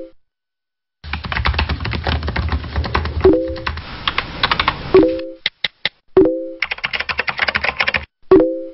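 Computer keyboard typing in quick runs of clicks, starting about a second in, pausing briefly after five seconds for a few single keystrokes, then resuming. Three short notification blips cut in along the way, as chat-style alert sounds.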